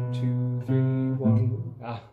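Nylon-string classical guitar playing a slow single-note melody of low notes, each plucked note ringing on, then breaking off near the end after a wrong note.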